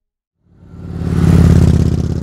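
Motorcycle engine running past: it comes in about half a second in, swells to a loud peak and then starts to fade away.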